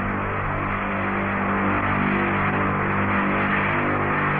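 A recording of one of the unexplained 'strange sky sounds': a steady, loud drone of several held low tones under a wide hiss, with no break or change.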